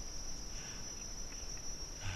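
Steady high-pitched insect chorus from roadside forest, one unbroken shrill tone.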